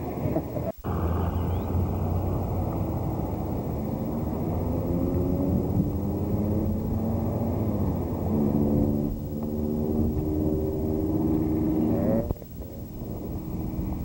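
Motor vehicle engine running with a low rumble, its note climbing slowly and then holding steady as it gathers speed. The sound drops out briefly about a second in and falls away suddenly near the end.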